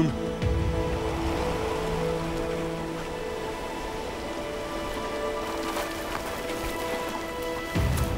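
Steady rushing of churning white water below river falls, with the sustained held tones of a background music score over it and a low thump about half a second in.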